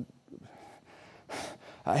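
A man's pause in speech with an audible intake of breath a little over a second in, after which his voice picks up again near the end.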